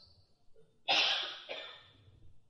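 A single cough from a person, about a second in.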